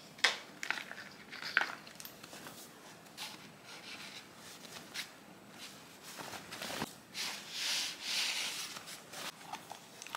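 Fabric drawstring dust bag rustling while shoes are handled and slid into it, with scattered light knocks and clicks, the sharpest just after the start. There is a longer rustle of the bag about seven seconds in.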